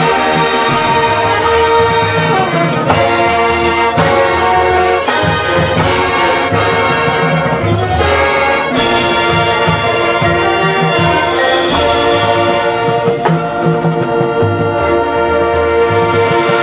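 Marching band playing: full brass sections holding loud sustained chords, punctuated by occasional drum and percussion strikes.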